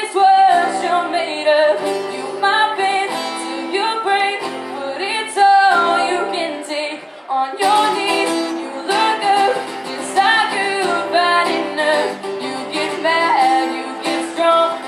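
A woman singing a country ballad live into a microphone, accompanied by acoustic guitar.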